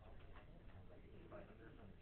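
Near silence: quiet classroom room tone with a few faint clicks and faint, distant voices.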